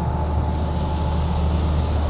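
Hitachi Zaxis 240 (ZX240) crawler excavator's diesel engine running steadily as the machine slews its upper body around, a constant low hum with a faint steady whine above it.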